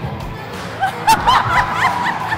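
Laughter breaking out about halfway through, short high bursts over background music, with a single sharp smack near the middle.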